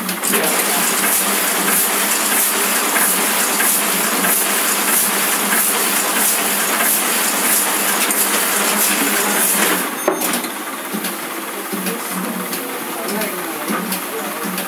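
Demy-size offset printing press running: a steady machine hum with a dense clattering of fine clicks, dropping in level about ten seconds in.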